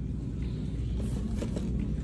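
Steady low rumble of store background noise picked up by a handheld phone, with a few faint light knocks.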